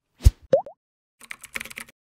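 Animated-logo sound effects: a low thump, then two quick rising pops, then a rapid run of keyboard-typing clicks.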